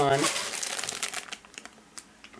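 Clear plastic bags of beaded necklaces crinkling as they are handled, fading out about a second in, with a few faint ticks after.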